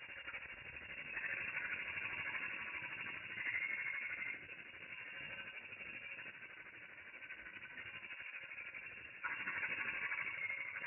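Steady hiss of a domestic ultrasonic cleaning tank's water, played back slowed down eight times. It steps up louder about a second in, drops back after about four seconds, and steps up again near the end.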